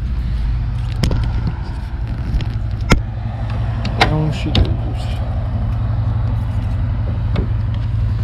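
Clunks and knocks from a Minn Kota Terrova trolling motor's bow mount as the shaft is swung down from stowed and locked into the deployed position. The loudest knock comes about three seconds in. Under them runs a steady low engine-like hum.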